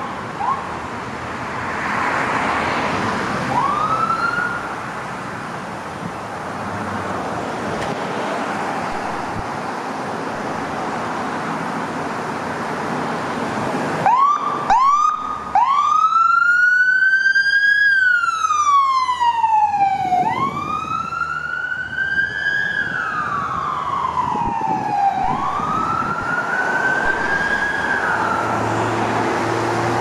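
Ambulance electronic siren over passing traffic: a few short chirps near the start, then about halfway in a burst of quick yelps that turns into a slow wail rising and falling three times.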